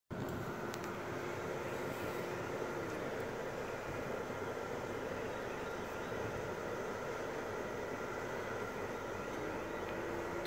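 Steady hum and hiss inside a parked car's cabin with the car running and its ventilation fan blowing.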